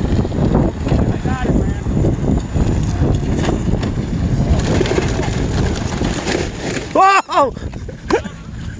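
Wind buffeting the microphone of a moving e-bike rider, a steady rumble. Near the end comes a short loud shout as the bike slides out sideways on wet grass.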